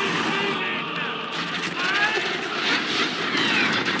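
Battle-scene film soundtrack of an orc army charging: many voices yelling war cries over a dense, steady din of the crowd.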